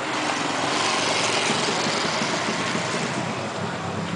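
A motor vehicle going by on the street, its engine and road noise swelling about a second in and then slowly fading.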